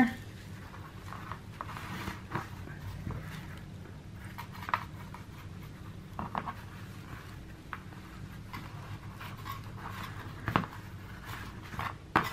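Quiet handling sounds: faint rustles and small scattered clicks of hands working a stuffed fabric carrot and tying jute twine around its grass top, over a low steady hum.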